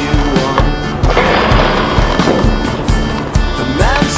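A song with a steady beat and a singing voice, with skateboard sounds mixed underneath: a stretch of rolling noise from about a second in to past two seconds.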